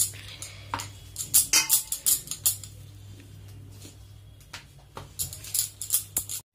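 Wooden rolling pin working roti dough on a round marble rolling board, with a run of sharp clacks and knocks of wood on stone. The knocks come thickest in the first couple of seconds and again near the end, with a quieter stretch between.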